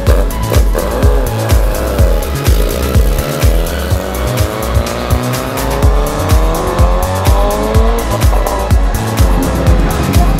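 Background music with a heavy, steady beat. Over it a racing motorcycle engine climbs in pitch through one long pull, from about two seconds in until it fades near eight seconds.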